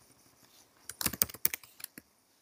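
Typing on a computer keyboard: a quick run of about half a dozen keystrokes starting about a second in.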